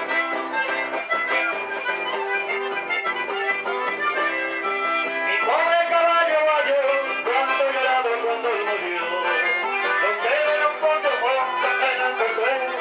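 Accordion-led chamamé dance music playing steadily.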